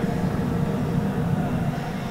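Steady low rumble of outdoor background noise.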